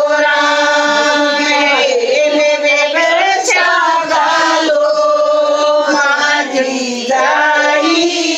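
Group of women singing a devotional folk song (bhajan) together in long, drawn-out notes, with short breaks between lines about two seconds in and near the end.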